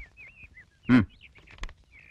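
A man's short 'hmm' about a second in, over faint high bird chirps in the background, with a few light clicks of paper handling.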